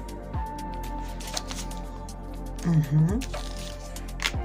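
Soft background music with steady sustained tones, over small clicks and rustles of oracle cards being handled and drawn from the deck. A short, louder low sound comes about three seconds in.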